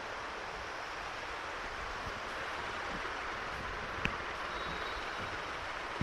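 Steady background hiss of room tone with no speech, and one sharp faint click about four seconds in.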